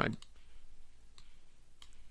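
A few faint, scattered computer mouse clicks as a swatch colour is picked and a brush stroke is drawn.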